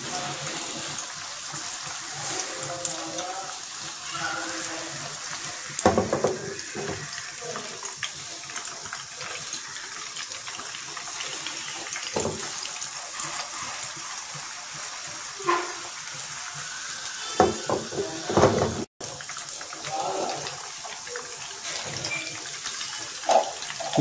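Chicken koftas sizzling steadily in hot oil in a deep pot, with a few brief knocks along the way.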